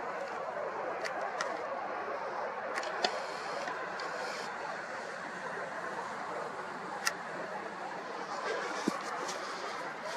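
Steady faint background noise of an outdoor evening, with a few soft clicks, one at about a second and a half, two near three seconds, and a sharper one about seven seconds in.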